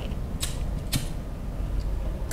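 Two sharp metal clicks about half a second apart as a barber's straight razor is handled and fitted with a blade.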